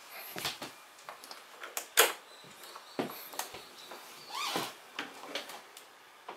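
Handling noises on a scooter: scattered light clicks and knocks, one sharper knock about two seconds in and a short squeak about four and a half seconds in.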